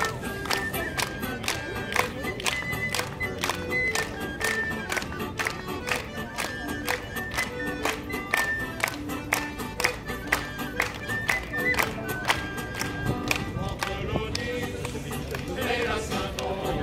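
Live sailors' song (chant de marins) played by a group with an acoustic guitar: a melody of held notes over a sharp, regular beat about twice a second.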